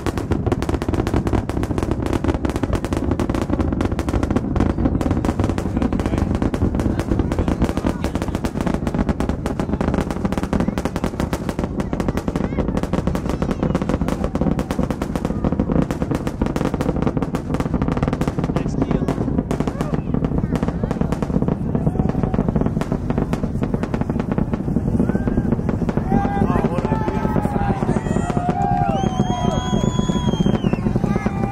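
SpaceX Super Heavy booster's Raptor rocket engines heard from miles away during ascent: a loud, continuous crackle over a deep rumble. Near the end, high wavering calls rise and fall over it.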